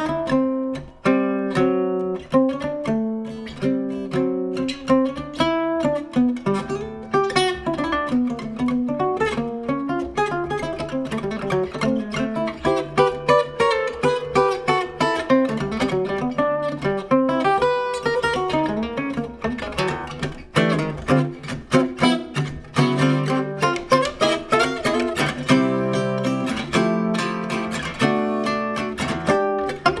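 1958 Epiphone Triumph Cutaway (A412) acoustic archtop guitar, strung with nickel round-wound strings, played solo with a pick: an instrumental swing chorus of picked chords and melody lines.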